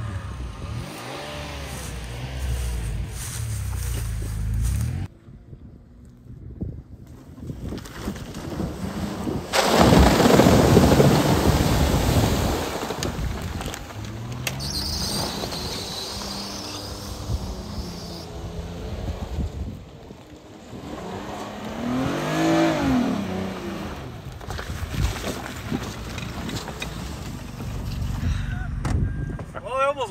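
Hyundai SUV engine revving as it drives through mud with its wheels spinning. A loud rushing noise comes about ten seconds in, and a rev rises and falls about two-thirds of the way through.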